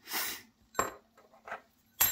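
Plastic parts of a TWSBI Eco fountain pen's piston mechanism handled by fingers: a short scrape, then two light clicks in the middle.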